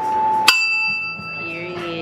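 A small bell struck once about half a second in, giving a sharp ding that rings on with a clear tone and fades slowly.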